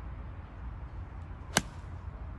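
Golf iron striking a ball: one sharp click about one and a half seconds in.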